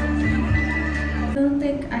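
Karaoke: a woman singing a 1970s Chinese song through a microphone and PA over a loud backing track with heavy bass. The bass drops out about a second and a half in.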